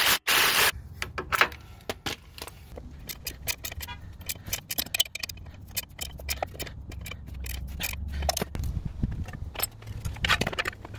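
Hand tools working on suspension bolts: quick metallic clicks and rattles of a ratchet and sockets as nuts are run onto the control-arm bolts and tightened, with a loud burst of noise in the first second.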